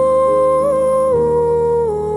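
A woman's voice holding one long wordless note, stepping down in pitch twice, over sustained piano chords.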